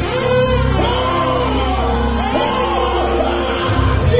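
A live gospel church band playing a praise break, with steady bass notes under it and voices singing.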